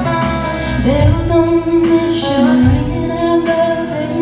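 Live country band performing: a woman sings lead with long held notes over strummed acoustic guitars, drums and electric guitar.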